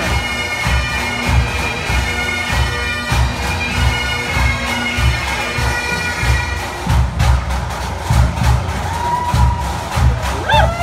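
Bagpipe music over a steady drumbeat. The pipes stop about seven seconds in, and the drumbeat carries on.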